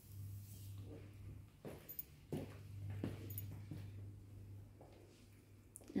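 A fabric curtain pulled aside by hand, with faint rustling and a few light clicks and knocks in the middle, over a steady low hum.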